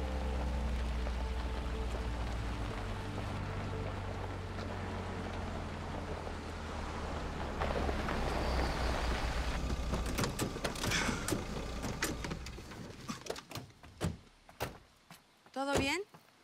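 Film soundtrack: a steady low rumble under a fading music score for about ten seconds, which then stops. Scattered sharp knocks and clicks follow, and a voice comes in right at the end.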